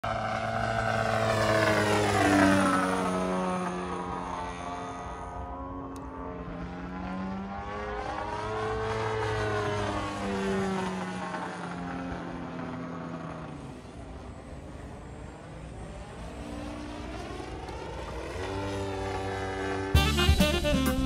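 Large radio-controlled aerobatic model airplane's nose engine and two-blade propeller in flight, its note swooping up and down in pitch as it passes and manoeuvres. Loudest about two seconds in, fading lower and quieter through the middle, with another swell around nine seconds and a rise again near the end.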